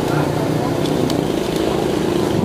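A motor vehicle engine running steadily at a low, even pitch.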